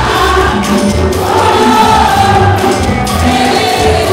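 Live gospel praise music: a band with electric guitars, bass and drums plays while many voices sing together over a steady, pulsing bass line.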